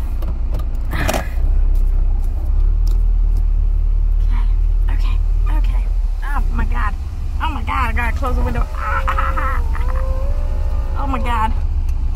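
Steady low rumble of a car heard from inside an open-top NA Mazda MX-5, with a short rushing noise about a second in. In the second half a woman vocalises without words and holds one sung note.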